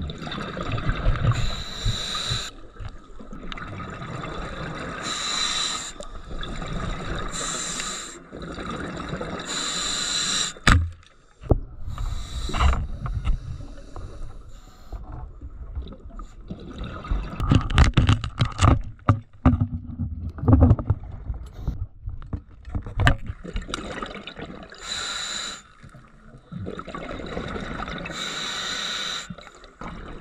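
Scuba diver breathing through a regulator underwater: a hissing inhale every few seconds, with bubbling rumble on the exhales. A sharp click comes about a third of the way in, and a run of knocks and rumbles follows in the middle.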